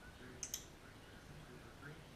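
Two quick, sharp clicks about a tenth of a second apart, against faint room tone.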